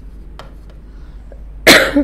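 A woman coughs once, short and loud, near the end; before it there are only a few faint soft ticks.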